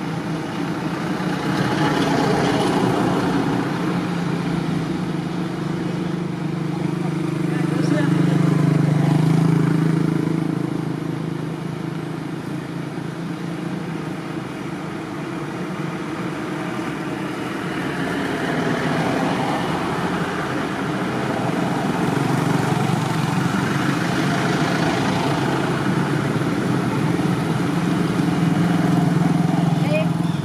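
Low, continuous motor rumble that swells and fades several times, typical of passing vehicles, with indistinct voices.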